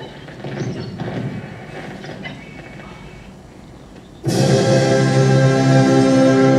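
A quieter, uneven stretch, then about four seconds in loud choral music cuts in suddenly, a choir holding sustained chords.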